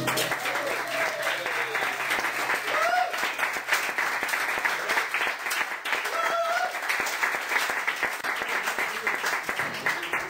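Audience applauding steadily, with a few short cheers. The final strummed guitar chord rings out and fades in the first second.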